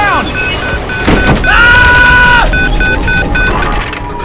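Horror-film sound effects of a helicopter under attack: a rapid, even beeping runs through, and about a second and a half in a loud, steady siren-like tone sounds for about a second, then a long falling tone.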